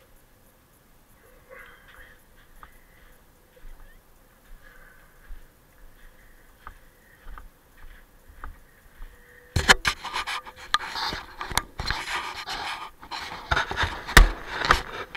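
Soft breathing puffs close to the microphone. About two-thirds of the way through, loud rustling and scraping with sharp clicks takes over.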